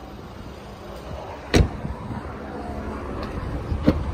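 Ford EcoSport's rear passenger door shut with a solid thump about a second and a half in, then a smaller click near the end as the tailgate latch is released.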